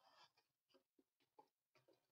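Near silence with a few faint taps and scrapes of cardboard boxes being handled, as a mini box is slid out of a trading-card display box.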